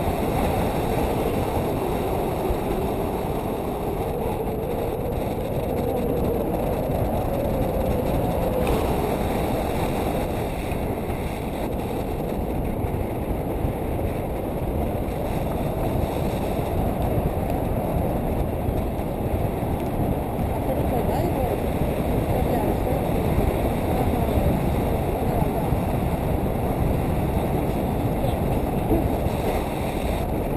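Steady wind rushing over an action camera's microphone in flight under a tandem paraglider: a dense, low rumbling roar with no breaks.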